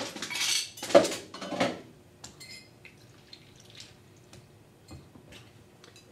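Ice cubes scooped from an ice bin and poured into a stemmed cocktail glass, rattling for the first couple of seconds, then a few light clinks as the ice settles.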